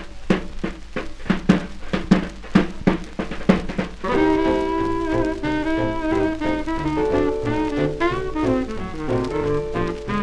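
Swing quintet on a 1943 78 rpm record: for about four seconds the drum kit plays a break of sharp, evenly spaced strokes, then the horns come in with long held melody notes over bass and drums.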